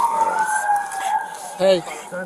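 Police car siren wailing, two overlapping tones gliding in pitch: one sliding down while another rises and then eases off, with fabric rubbing against a body-worn camera.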